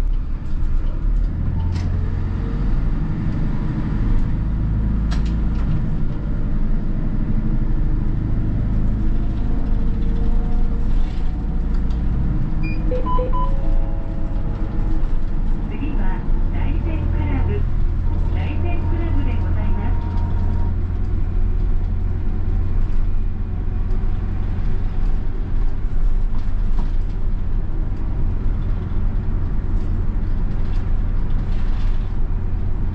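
Hino Poncho community bus's diesel engine and road noise heard from inside the cabin as the bus drives along, the engine note strengthening about a second and a half in and again past the halfway point.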